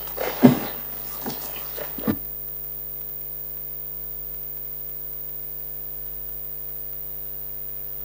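Steady electrical mains hum from the room's microphone and sound system, a constant buzz of evenly spaced tones. A few short small sounds come in the first two seconds, then only the hum remains.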